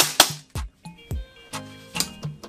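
Airsoft gun firing, the last two shots of a rapid string at about four a second at the start, then quiet with faint background music.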